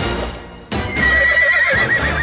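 A horse whinnying: a loud call that starts under a second in and holds a high, wavering pitch for about a second, over music.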